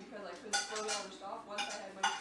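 Cutlery clinking and scraping against a plate, with a few sharp clinks. Voices are in the background.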